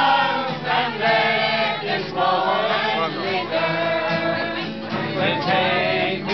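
A mixed group of men and women singing together to a strummed acoustic guitar, a pub sing-along.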